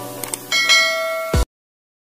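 Subscribe-button animation sound effect: two quick mouse clicks, then a bell ding that rings for about a second. A short low thump follows, and then it cuts off suddenly.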